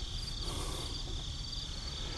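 Insects trilling steadily in a high, pulsing chorus, with a faint low rumble underneath.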